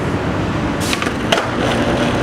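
Skateboard wheels rolling on hard pavement with a steady low rumble, with a few sharp clacks of the board about a second in.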